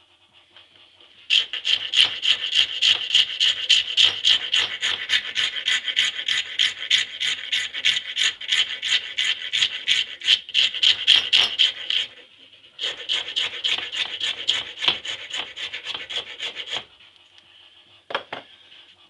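Hand file cutting a Burmese blackwood pistol grip blank clamped in a bench vise, in quick back-and-forth strokes several a second. The filing starts just over a second in, runs about ten seconds, stops briefly, then goes on for about four seconds more before stopping.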